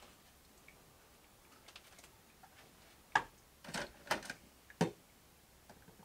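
A handful of sharp plastic clicks and clacks, bunched between about three and five seconds in, as a Keurig single-serve brewer is loaded with a pod and closed.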